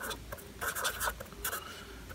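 A pen writing on paper: a run of short, irregular scratching strokes as the pen forms a word.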